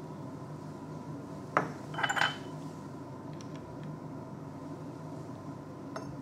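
Laboratory glassware handled at the burette: a knock about a second and a half in, then a quick couple of glassy clinks with a short ring, and a few faint ticks after, over a steady faint hum.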